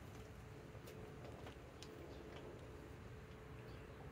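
Near silence: faint background with a thin steady hum and a few faint, scattered ticks.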